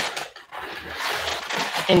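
Rustling as a hand rummages through a cardboard box of dried sunflower seeds, a steady dry shuffling with faint rattles.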